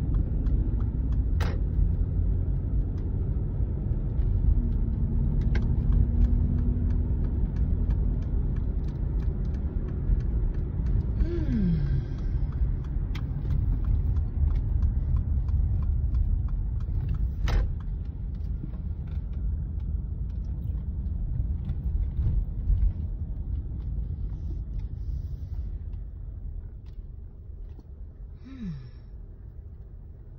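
Low, steady road and engine rumble of a moving car heard from inside the cabin, with a few sharp clicks; the rumble dies down over the last few seconds as the car slows into a parking lot.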